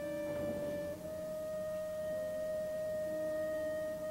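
Film score: a flute holding one long, pure note, stepping up slightly in pitch about a second in.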